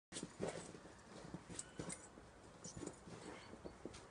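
A Samoyed and a person scuffling about in snow over a ball: irregular short crunching steps and scrapes, the strongest about half a second in.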